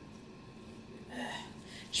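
A woman's short, exasperated "ugh" about a second in, after a quiet moment; she starts speaking again right at the end.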